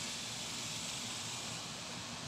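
Steady hiss of outdoor background noise, with no distinct event.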